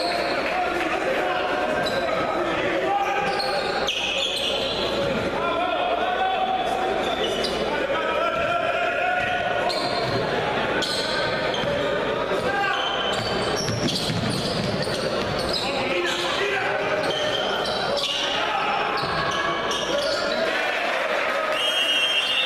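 Live indoor basketball game sound: a ball dribbled on a hardwood court, with short high squeaks and voices from players and crowd, echoing in a large gym.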